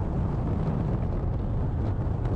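Steady low rumble of road and wind noise from a moving vehicle at driving speed, with no distinct engine note.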